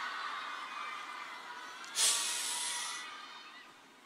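Arena crowd cheering and screaming, dying away. About two seconds in comes a sudden rush of hissing noise that fades over a second.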